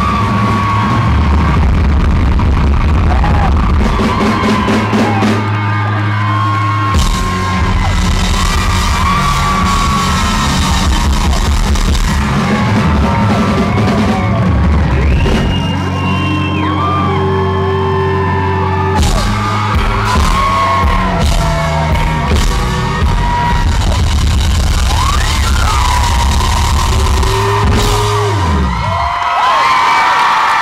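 Live rock band playing loud through a PA in a large hall: distorted electric guitars, bass and drums, with yelled vocals. Near the end the low end drops away in a falling slide as the song winds down.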